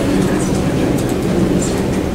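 Steady low hum of a full room, with indistinct murmuring voices and a few light scattered clicks.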